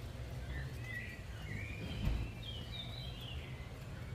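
Small songbirds chirping and twittering, a run of short high chirps, over a steady low rumble, with one dull thump about two seconds in.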